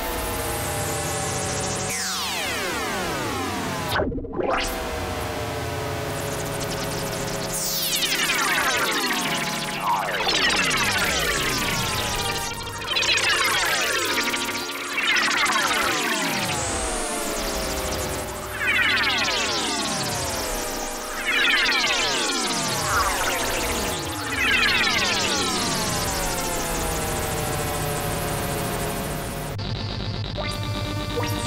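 Fender Chroma Polaris analog synthesizer recorded dry with no effects, playing notes whose pitch sweeps sharply downward from high. A new falling sweep comes in every two to three seconds over low sustained tones.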